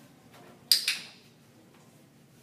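Dog-training clicker clicked once, a sharp double snap about two-thirds of a second in, marking the dog's behaviour for a reward during shaping.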